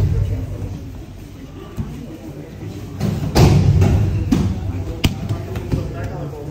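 Dull thuds and slaps of aikido partners taking falls and stepping on tatami mats, the heaviest about three and a half seconds in with sharper knocks near four and a half and five seconds, under indistinct voices in the hall.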